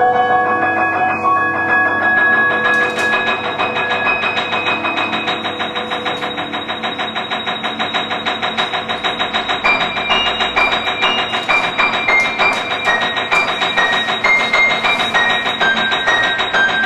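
Live piano music: rapid, evenly repeated notes run on in a steady pulse, with high held notes entering about two-thirds of the way through.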